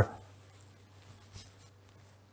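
Faint pen-on-paper and paper-handling sounds, light scratching and rustling, with a small tick about one and a half seconds in.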